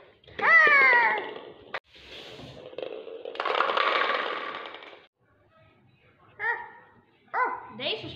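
A child's rising shout, then a few seconds later a rattling clatter as small toy bowling pins are knocked over and fall on a wooden floor.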